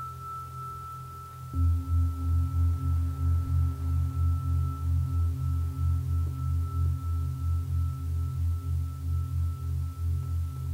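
Meditative drone music of sustained, singing-bowl-like ringing tones: a steady high tone, joined about a second and a half in by a deep tone that pulses about three times a second.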